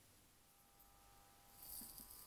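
Near silence: faint room tone, with a faint hiss coming up near the end.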